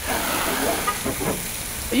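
Garden hose spraying water onto a car's body panels and front wheel, a steady hiss of water striking metal.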